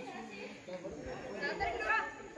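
Indistinct chatter of people talking, growing louder in the second half.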